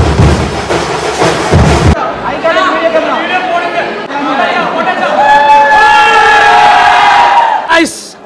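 Loud, dense drumming for about the first two seconds, then a crowd of voices singing and shouting together with long held notes, fading near the end.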